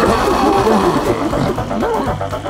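Many overlapping cartoon creature squeals and yelps over backing music, a frantic jumble of rising and falling cries that thins out near the end.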